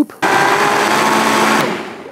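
Vitamix blender running, puréeing softened dried chilies in beef stock: a steady motor whine over the churning liquid. It starts just after the beginning and cuts off after about a second and a half.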